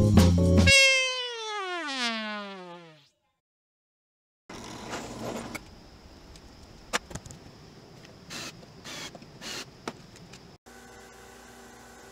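Background music cuts off, and a trumpet sound effect plays one long, wavering slide downward lasting about two seconds: a comic 'fail' cue marking a mistake. After a moment of silence come faint handling sounds with a few light clicks.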